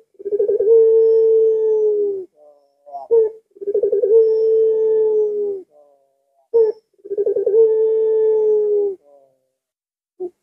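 Ringneck dove of the puter pelung type cooing: three long drawn-out coos about three seconds apart. Each is preceded by a short note, starts with a stutter, holds one pitch for about two seconds and sags slightly at the end.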